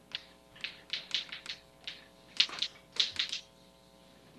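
Chalk writing on a blackboard: a quick, irregular run of short taps and scratches as letters are written by hand, sharpest about two and a half and three seconds in.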